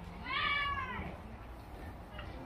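A single high-pitched cry, under a second long, that rises and then falls in pitch.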